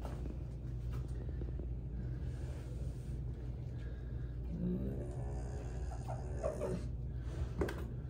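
A dog breathing and making low throaty sounds while its ear is cleaned, over a steady low hum; the throaty sounds come more clearly in the second half.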